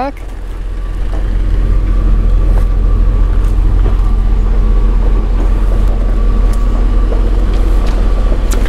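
Steady low engine rumble from a motor vehicle running close by, building over the first two seconds and then holding level.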